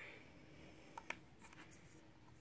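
Near silence with two faint, small clicks about a second in, from metal eyeshadow pans being handled in a makeup palette.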